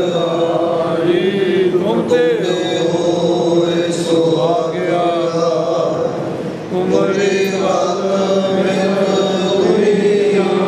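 Congregation chanting together in long, held notes, with brief breaks about two seconds in and again near seven seconds.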